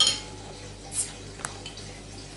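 Crown cap prised off a glass beer bottle with a bottle opener: a sharp pop with a brief hiss of escaping gas at the start, followed by two small metallic clicks a second or so later.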